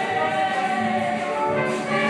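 A musical theatre cast singing together in chorus over instrumental accompaniment.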